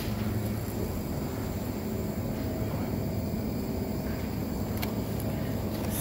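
Steady low hum of supermarket background noise beside refrigerated produce cases, with a couple of faint clicks near the end.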